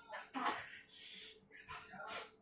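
A person's wordless vocal sounds: a short sharp cry about half a second in, followed by a long breathy exhale and a fainter sound near the end.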